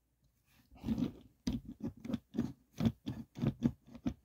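Die-cast Matchbox toy car pushed back and forth by hand along an orange plastic Hot Wheels track. Its wheels and body make a string of short clicking, scraping rattles, about three or four a second, beginning just under a second in.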